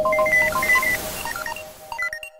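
Electronic intro jingle: a quick run of short, telephone-like beeps over a held lower tone, with a hiss that fades away toward the end.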